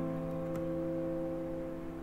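A grand piano chord ringing on and slowly dying away.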